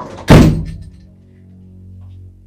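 A single loud, heavy thud that dies away within about half a second, over a sustained low music drone.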